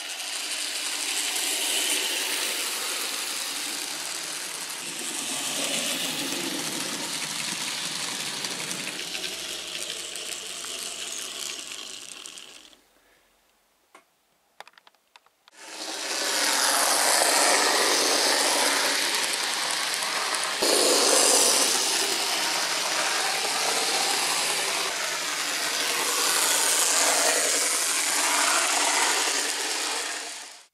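N gauge model train running on the layout's track, a steady rushing mechanical noise from its small motor and wheels. It breaks off for about three seconds near the middle, then comes back louder.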